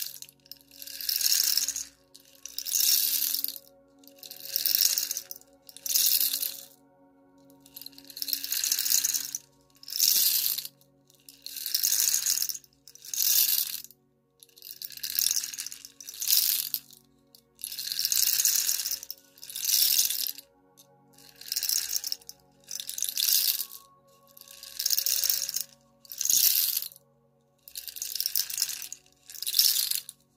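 Rain stick tipped back and forth, its fill pouring through in a rain-like rattling swish each time. It sounds about eighteen times, each pour lasting about a second with short gaps between.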